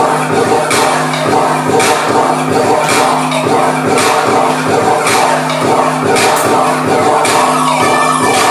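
Dance music played back for a class: a repeating bass line with a beat of sharp hits over it.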